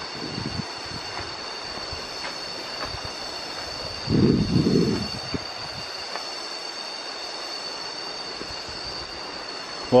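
Cicadas in tropical forest droning in a steady high-pitched whine. A brief low-pitched noise comes about four seconds in.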